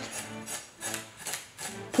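Back of a chef's knife scraping scales off a whole sea bass against the grain: a series of short, quiet scraping strokes, a few a second, with loose scales rattling off.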